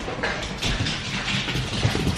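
Rustling and soft knocks from the camera being handled and moved close to the microphone.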